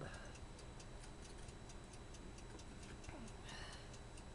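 Faint, steady, rapid ticking, a few ticks a second, over a low background hiss.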